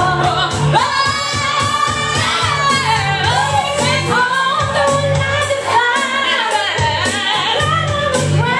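Women singing into microphones over amplified backing music with a steady bass line, holding long notes and gliding between them.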